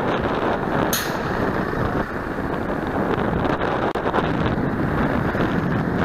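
Wind rushing over the microphone of a cyclist's camera while riding along a street in traffic: a steady, dense rushing noise, with a brief sharp hiss about a second in.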